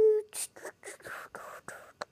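A toddler's held, high-pitched vocal sound ends just after the start, followed by a run of about seven soft, breathy whispering puffs.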